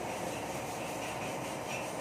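Stick (shielded metal arc) welding arc burning steadily on a steel pipe joint, an even crackling hiss without breaks.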